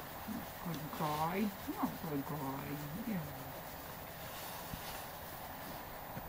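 A person's voice speaking softly for about three seconds from shortly after the start, then a quiet stretch of outdoor background.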